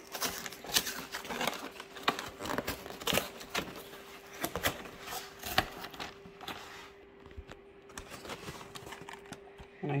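Cardboard cereal box being worked open one-handed: irregular crackling and tearing of the flap, then the plastic inner bag crinkling as a hand reaches inside. The rustling is dense at first and thins out in the second half.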